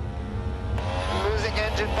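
Low, steady drone of a Mercedes Formula 1 car's 1.6-litre V6 turbo-hybrid engine heard onboard, running short of power because its energy-recovery system has failed. A team-radio voice starts about a second in.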